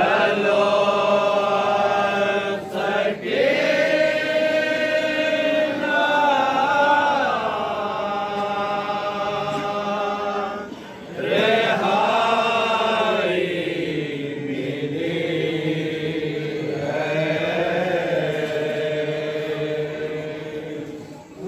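Male voices chanting a nauha, a Shia mourning lament, in long, drawn-out sung lines. There are short breaks for breath about three and eleven seconds in.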